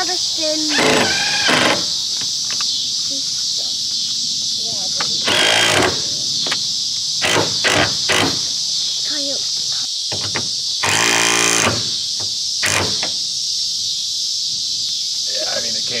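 Steady high-pitched chorus of crickets throughout, with a few brief louder noises about a second in, near six seconds and near eleven seconds, and a laugh early on.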